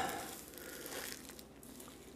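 Faint crinkling of the plastic wrap just peeled off the gimbal's box, a few soft crackles over a low hiss.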